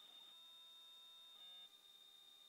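Near silence: room tone with a faint, steady high-pitched whine.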